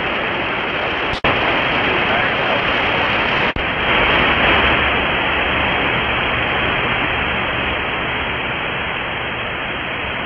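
Steady, loud hiss of radio static on an air traffic control frequency, with two brief dropouts, about a second in and about three and a half seconds in.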